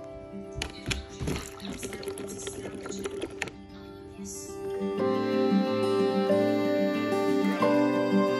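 Water splashing into a plastic spin-mop bucket, with sharp plastic clicks, over soft background guitar music; the splashing stops after about three and a half seconds and the music alone carries on, louder.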